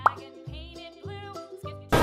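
A quick rising pop sound effect, then a soft, cute-sounding background jingle of short held notes that change every half second or so.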